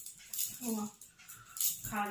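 Golden retriever giving a short whine about halfway through and starting a longer howl right at the end, over the rustle of a quilt being pulled around it.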